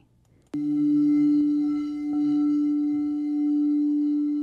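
Crystal singing bowl struck about half a second in, then ringing on as one steady tone with faint higher overtones above it.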